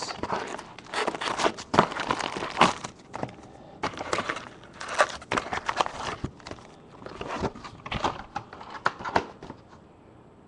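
Plastic wrapping on a box of baseball card packs being torn open and crumpled, in irregular crackly bursts that stop shortly before the end.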